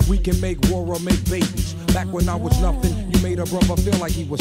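Hip-hop track playing from a DJ mix: a rapper's vocal over a steady beat with a deep bass line.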